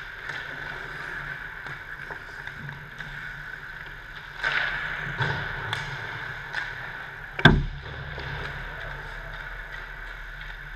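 Ice-hockey play on an indoor rink: skate blades scraping the ice and scattered clicks of sticks on pucks over a steady background hum. About seven and a half seconds in there is one loud, sharp crack of a puck being hit.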